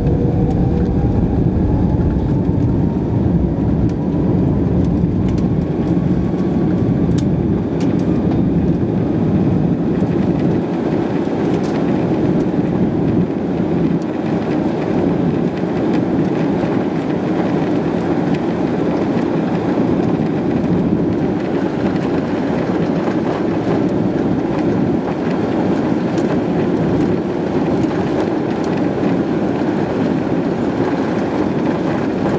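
Airbus A330-300's jet engines heard from inside the cabin, a whine rising in pitch over the first few seconds as they spool up to take-off thrust. It then settles into a loud, steady roar as the airliner accelerates down the runway on its take-off roll, with a few faint clicks partway through.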